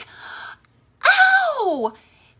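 A woman's sharp gasp, then about a second in a loud, high cry of pain that holds briefly and slides down in pitch: an acted recoil from sudden pain and shock.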